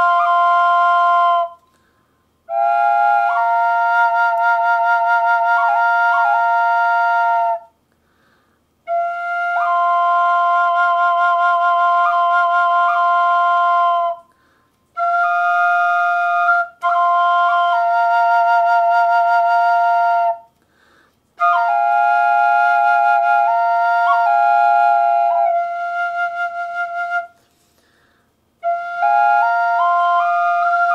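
Double drone flute of Japanese knotweed in F pentatonic minor. One pipe holds a steady drone note while a pentatonic melody moves above it on the other, in phrases of a few seconds broken by short breath pauses.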